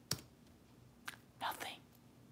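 A sharp computer click near the start and a smaller one about a second in, followed by a brief whispered, breathy exclamation from a woman.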